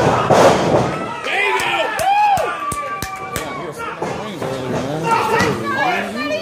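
Wrestling crowd yelling and cheering with many high-pitched shouts, over four sharp slaps and thuds from the ring between about two and three and a half seconds in.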